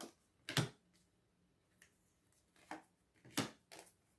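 Oracle cards being laid down on a wooden table: a few short, soft taps and slaps of card on wood, one about half a second in and a small cluster near the end.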